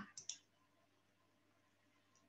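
Two faint computer-mouse clicks in quick succession just after the start, advancing the presentation slide, then near silence.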